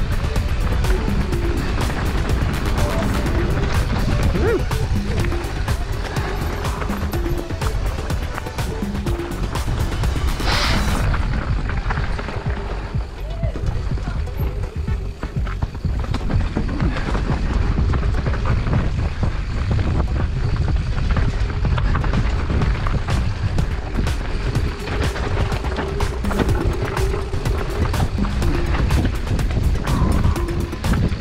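Mountain-bike descent heard from a camera on the Giant Reign Advanced Pro 29er: wind rushing over the microphone, tyres on dirt and the bike rattling over roots and rocks.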